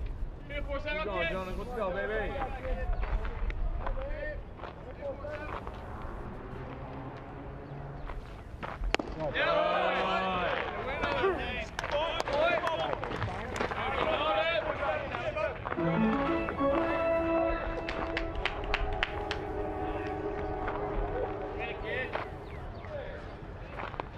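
Ballpark crowd ambience with voices calling out and chattering, and a single sharp crack about nine seconds in. Stadium PA music with steady held notes plays through the second half.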